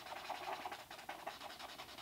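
Thick felt-tip marker rubbing on paper in quick back-and-forth strokes, faint, as it colours in a solid black patch.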